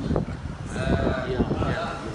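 Men's voices in a crowd, with one voice drawn out in a long held call about halfway through over the general murmur.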